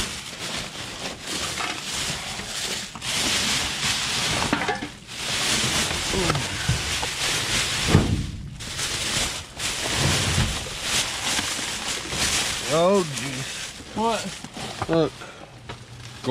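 Plastic garbage bags and food packaging rustling and crinkling as gloved hands dig through a dumpster, with a sharp knock about halfway through. A few short murmured vocal sounds come near the end.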